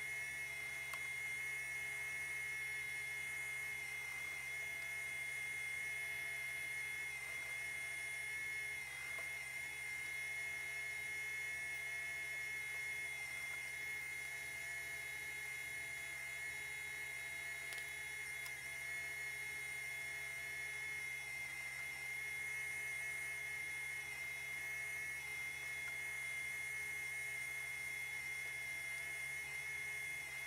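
Industrial sewing machine running steadily with a high whine while stitching a turned hem in tulle and satin fabric.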